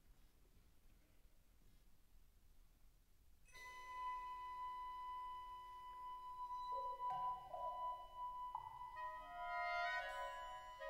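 Quiet hall room tone, then a wind band begins softly about three and a half seconds in with long held high tones. More notes enter a few seconds later, with marimba and other mallet percussion playing.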